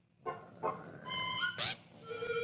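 Classic cartoon soundtrack: short pitched musical notes and sound effects after a moment's silence, with a brief hissing swish about three-quarters of the way through.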